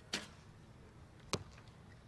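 A recurve bow shot: a sharp snap of the string on release with a brief ringing tail, then about a second later a short sharp knock as the arrow strikes the target.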